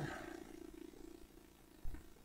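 Quiet room tone: a faint, steady low hum after a man's voice dies away, with one short, soft thump near the end.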